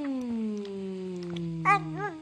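One long drawn-out vocal 'bum', hummed as a single held note that slides slowly down in pitch, with a short wobble near the end.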